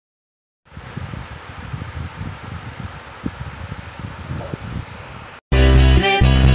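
Low rumbling hiss of background noise on a phone microphone, with no speech, then loud music starts abruptly near the end after a brief break.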